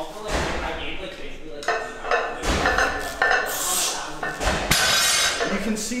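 Barbell loaded with iron plates being deadlifted: the plates clank and the bar knocks as the slack is pulled out of it and the weight breaks off the floor, with three heavy thuds over the few seconds.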